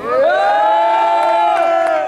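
Several men's voices come in together on one long held note, sliding up into it at the start and holding it for about two seconds. It is the group's sung response in a call-and-response nasheed.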